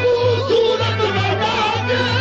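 Qawwali: a male lead voice sings long, wavering melismatic runs over a steady held harmonium accompaniment, with a low drum pulsing about twice a second.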